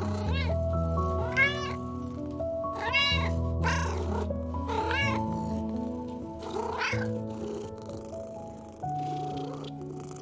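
Kitten meowing: about six short meows that rise and fall in pitch over the first seven seconds, over soft background music with held notes.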